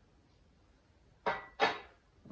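Two brief knocks or scrapes, about a third of a second apart, starting a little past a second in, from a painted pedal enclosure being handled.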